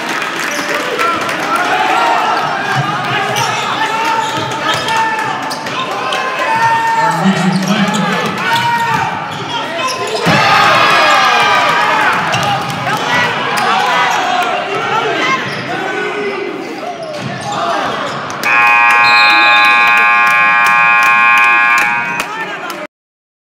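Gym crowd talking and calling out over basketball play and dribbling, growing louder about ten seconds in. About eighteen seconds in the scoreboard horn sounds one long steady blast lasting about four seconds, marking the end of the first half.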